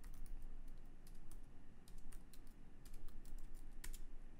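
Typing on a computer keyboard: a run of quick, irregularly spaced key clicks, with one sharper click near the end.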